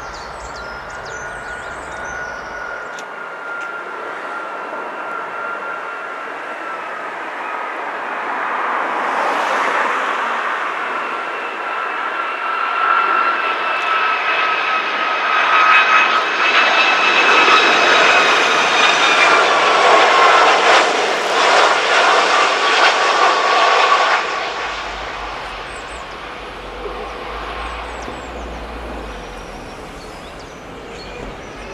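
Boeing 757 jet airliner on final approach with its gear down, its engines giving a steady whine at several pitches that slowly fall over a rushing noise. The sound grows louder as the aircraft nears and passes, then drops off sharply about three-quarters of the way through to a quieter background.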